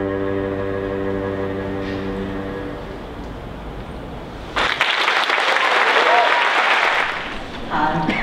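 A cello's last long bowed note dies away over about three seconds. About four and a half seconds in, audience applause starts abruptly, lasts nearly three seconds, then tapers off.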